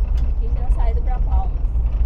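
Car driving along a paved street: a steady low rumble of road and engine noise.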